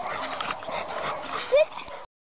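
American Staffordshire Terrier at play, giving one short, rising yelp about one and a half seconds in, the loudest sound here.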